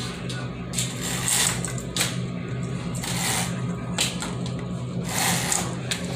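Bead chain of a roller blind being pulled hand over hand to raise the blind, rattling and clicking through the blind's clutch in short irregular bursts, over a steady low hum.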